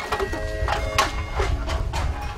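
Empty drink cans and plastic bottles strung around a person's neck clattering against each other as she hurries along, in sharp knocks about three times a second. Background music with short held notes plays over a low rumble.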